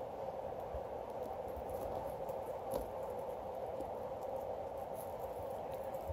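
Faint, scattered light clicks of a tangled jewelry chain being worked loose by hand, over a steady room hum.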